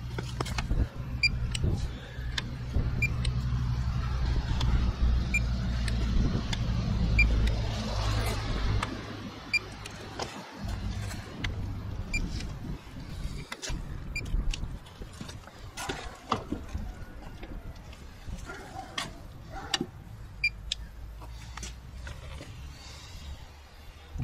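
A handheld paint thickness gauge gives about ten short high beeps, one every second or two, as it is pressed against the car's body panels one spot after another. Under the beeps are light taps and handling clicks, and a low steady rumble that is strongest for the first nine seconds or so.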